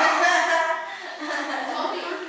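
A person's voice, speaking indistinctly and chuckling.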